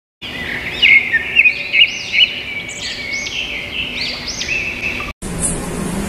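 Birds chirping in quick, repeated calls that sweep up and down in pitch, cutting off suddenly about five seconds in.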